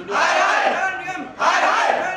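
A group of young men shouting a protest slogan in unison, two loud chanted phrases back to back.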